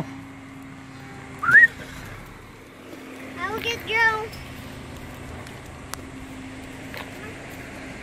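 A single short whistle gliding upward about a second and a half in, a call to a dog. A couple of seconds later comes a brief high-pitched call with a wavering pitch.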